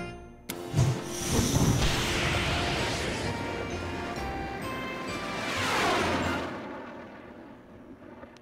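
Cartoon sound effect of a remote-controlled toy jet taking off with a sudden rush about half a second in and flying around, with a swooping pass that falls in pitch near six seconds, over background music.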